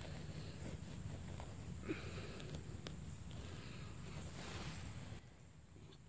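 Faint rustling and crumbling of hands working loose garden soil around a transplanted tomato plant, over a low steady rumble that stops near the end.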